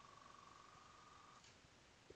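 Near silence: room tone, with a faint steady high tone that stops about one and a half seconds in.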